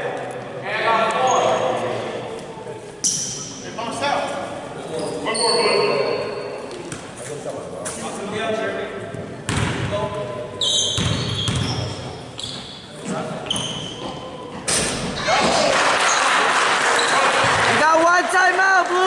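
Basketball bouncing on a hardwood gym floor among echoing players' voices and short sneaker squeaks, with a dense burst of clapping and cheering over the last few seconds.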